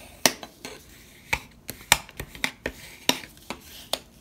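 Plastic scraper tool burnishing a fold in cardstock on a wooden tabletop: a dozen or so sharp, irregular clicks and taps with soft rubbing between them.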